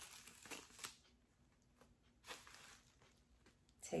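Faint rustling and crinkling of wig packaging as the netting is pulled off a curly human-hair wig, in a few short bursts near the start and again a little after halfway.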